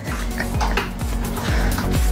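Light clicking and clattering over background music.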